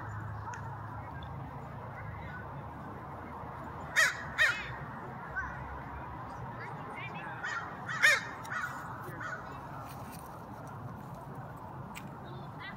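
American crows cawing: two loud caws about four seconds in and another near eight seconds, with fainter caws scattered between, over a steady low background rumble.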